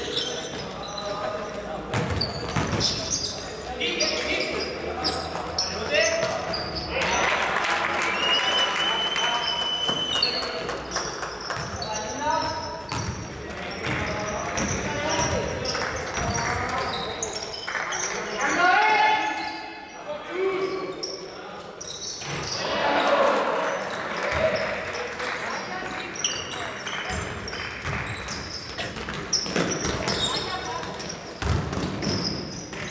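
Basketball being dribbled and passed on a hardwood-style court in a large echoing sports hall, with repeated ball bounces and players' calls and shouts throughout.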